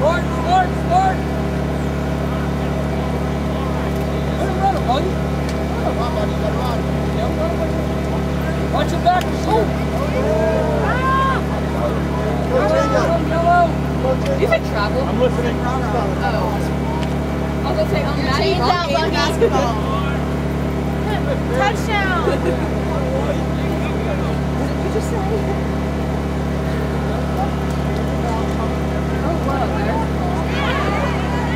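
Scattered shouts and calls of players and spectators at a lacrosse game over a steady, low mechanical hum.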